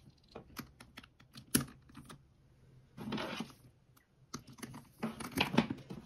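Small metal clicks and taps of the gold-tone snap-hook clasps on a leather bag strap as they are clipped onto the handbag's hardware, the sharpest click about one and a half seconds in. A short rustle of handling comes about three seconds in, and a few more clicks follow near the end.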